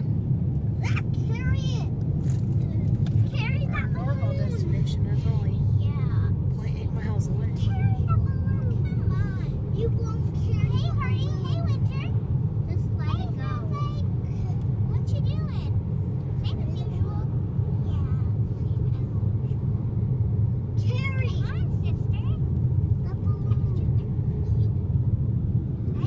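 Steady low road and engine rumble inside a moving car's cabin, with voices talking now and then over it.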